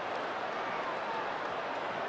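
Steady crowd noise from a baseball stadium's stands: many voices blending into an even hum, with no single voice clear.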